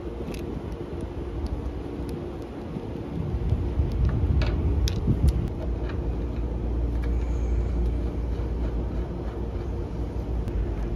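A steady low rumble grows louder about three seconds in. Over it come a few light metallic clicks from brass valve core removal tools being handled on the unit's service valves while the Schrader cores are put back in.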